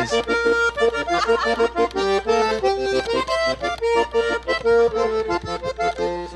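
Diatonic button accordion playing the instrumental introduction of a vallenato song, melody and chords sounding together in short, evenly paced notes.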